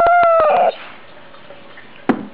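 A dog howling: one long, high held note that dips and breaks off about half a second in.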